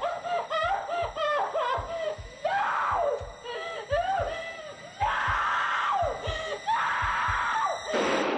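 A woman whimpering and sobbing in terror, breaking into short screams three times.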